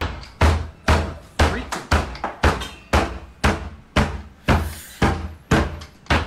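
Violent banging on a door, a steady run of heavy blows about two a second, each a deep thud with a short ringing after it.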